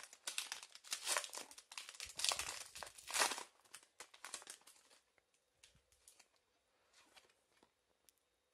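Foil wrapper of a Pokémon TCG booster pack being crinkled and torn open by hand: a dense run of crackles for about four seconds, then only a few faint rustles as the cards come out.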